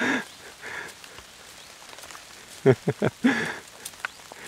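Light rain pattering steadily. About three seconds in, a person gives a short breathy laugh of three quick falling notes.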